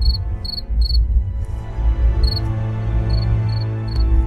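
Background music of held, sustained tones over a deep low throb, with a steady run of short high chirps like crickets repeating about three times a second.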